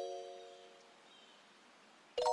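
Background music: a soft bell-like chime note, struck just before, fades out over the first second, then near silence.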